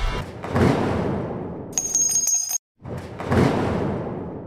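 Edited intro sound effects: a loud noisy swell that fades away, a bright, high bell-like ring about two seconds in that cuts off abruptly, then a second noisy swell that fades.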